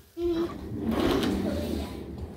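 A young child's short vocal sound, followed by about a second of rustling and rattling.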